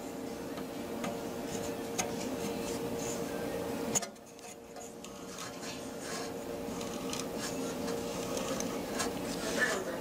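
Fiber optic illuminator humming steadily while its intensity knob is turned by hand, with light rubbing and small clicks from the knob. A sharp click comes about four seconds in, after which the hum drops and slowly builds back up.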